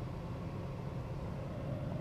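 Steady low hum and hiss of a parked vehicle's cab, with no distinct events.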